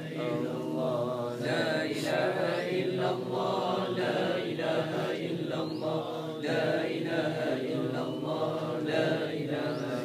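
A group of men chanting the tahlil, 'lā ilāha illallāh', in unison, the phrase repeated over and over in a steady rhythm with many voices overlapping.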